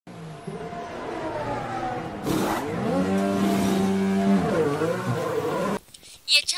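Red Bull Formula 1 car's turbocharged V6 engine running in the pit lane. Its note falls at first, a short hiss comes about two seconds in, then it holds a steady note before dipping and rising again. The sound cuts off suddenly just before the end.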